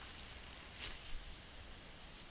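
Low, steady background hiss from a desk microphone in a pause between words, with a short soft puff of noise a little under a second in and a smaller one just after.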